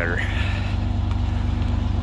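An engine idling steadily: a low, even rumble with a faint steady hum above it.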